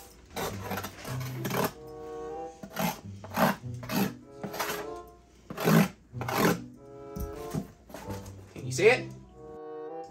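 Background music with steady repeating tones, over a series of short rasping strokes of a knife cutting and scraping a cardboard box open.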